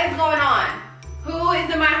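A voice calling out in long, drawn-out tones, twice, over background music with a steady bass beat.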